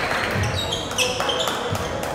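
Basketball dribbled on a hardwood gym floor, with a few thumps, while sneakers squeak on the court in short high chirps.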